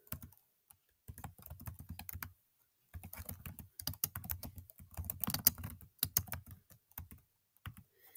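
Typing on a computer keyboard: a short run of keystrokes about a second in, then a longer run from about three to six seconds in, with a few single taps between and after.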